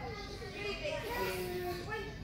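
Young children's voices: chatter and calls of children playing, no clear words.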